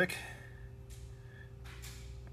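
Steady low electrical hum with a faint, brief rustle near the end.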